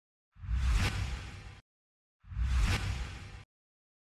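Two identical whoosh sound effects, each swelling and fading over about a second with a deep low rumble under a hiss, about two seconds apart: a news bulletin's transition sting between headlines.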